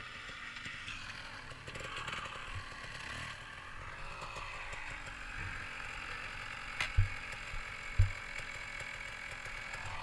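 Dirt bike engines running at low idle at a distance, a faint steady mechanical clatter, with two short low thumps on the microphone about a second apart near the end.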